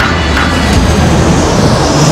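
Jet airliner engines at high power as the plane climbs after takeoff: a loud, steady rushing noise heard from inside the cabin.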